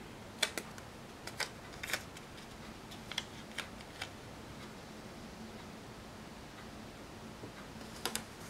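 A few light clicks and crackles of a paper sticker being peeled from its backing sheet and handled, bunched in the first four seconds. After that only faint steady room hiss with a low hum remains.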